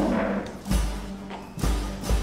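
Dramatic background score with a held low note and two deep drum beats about a second apart.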